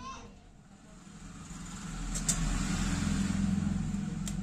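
Low rumble of a motor vehicle engine, growing louder from about a second and a half in and holding, with one sharp click a little after two seconds.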